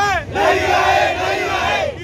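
A crowd of protesters shouting a slogan together, many voices at once, starting about a quarter second in and breaking off near the end.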